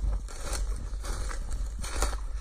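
Footsteps crunching and crackling through dry leaves and dead grass, with a couple of louder crunches, over a steady low rumble.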